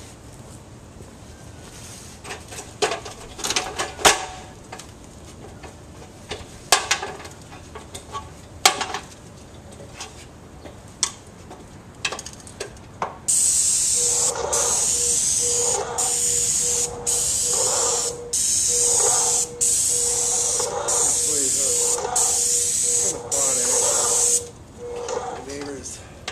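Scattered knocks and clicks of someone climbing a ladder, then, about halfway in, a hose-fed paint spray gun firing about ten hissing bursts of a second or so each, with short gaps as the trigger is pulled and released.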